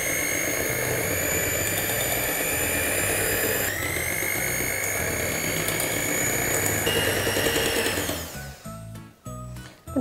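Electric hand mixer running with a steady high whine as its wire beaters whisk a cream mixture in a glass bowl. The pitch steps up slightly about four seconds in, and the motor stops about eight seconds in.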